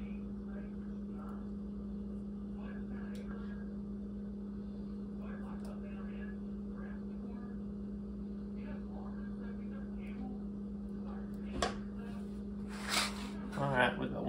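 A steady low hum under faint soft scrapes and taps of a ladle scooping and spreading apple sauce into a pie crust. Near the end, louder sharp scrapes as the ladle goes back into the stainless pot, then a brief voice.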